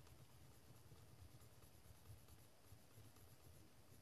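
Faint scratching of a burnishing stylus rubbed over a dry-transfer decal sheet on a plastic model freight car side, pressing the lettering onto the car, very quiet over a low room hum.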